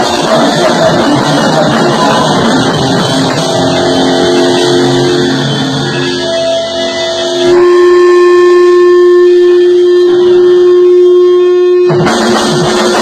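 Rock band playing live with electric guitar. After a few seconds the full band drops away and the guitar rings out in held notes. About halfway through, one loud sustained guitar note holds for about four seconds until the band comes back in at the end.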